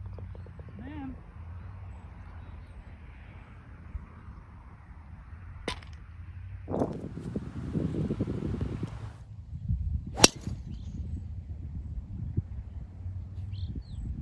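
Wind rumbling on the microphone, broken by a couple of sharp clicks. The loudest, about ten seconds in, is the crack of a golf club striking a ball off the tee.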